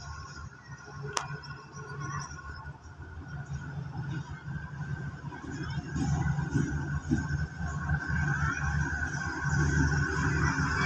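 Alsthom diesel-electric locomotive running as it pulls out of the station toward the listener, its low engine rumble growing louder in the second half. There is a brief sharp click about a second in.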